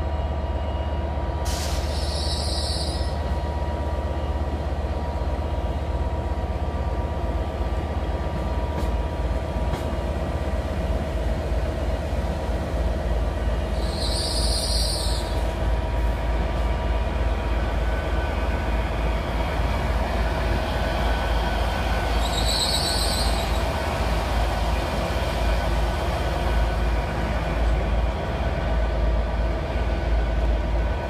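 Hitachi Azuma passenger train pulling slowly into a platform: a steady low rumble and running hum with several steady tones, growing a little louder as the train draws alongside. Three brief high squeals come from the train, about twelve and then eight seconds apart.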